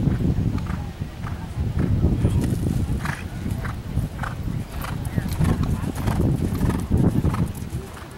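A horse's hoofbeats on sand arena footing as it lands from a fence and canters on: repeated dull thuds in a loping rhythm.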